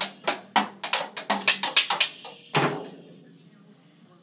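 Child's toy drum kit beaten with drumsticks: quick, uneven strikes for about two seconds, then one louder crash that rings out and fades away.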